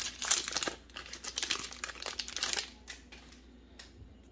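Foil wrapper of a Magic: The Gathering Jumpstart booster pack crinkling as it is torn open and pulled off the stack of cards. The crinkling is loudest in the first second, then trails off into occasional rustles.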